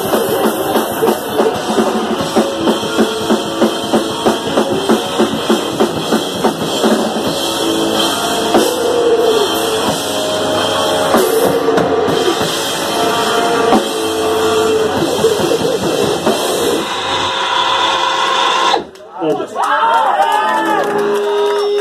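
Grindcore band playing live, with drum kit, electric guitar and bass. In the first few seconds a steady beat of loud hits comes about two or three a second, then the playing grows denser. The music breaks off sharply near the end.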